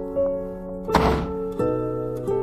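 A single heavy thunk about a second in, a door being shut, over soft background music of plucked-string notes.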